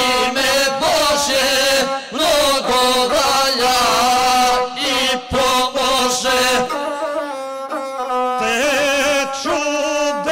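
Gusle, the one-string bowed folk fiddle, played under men singing an epic song in the guslar style. About seven seconds in the singing pauses for roughly two seconds while the gusle plays on alone, then the voice comes back.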